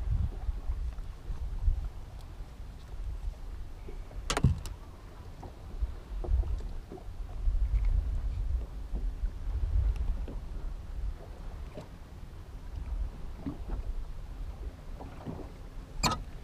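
Gusty low rumble of wind and water around a small boat drifting on a lake, with one sharp knock about four seconds in.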